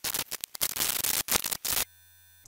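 Loud static-like hiss that cuts out briefly several times and stops abruptly near the end.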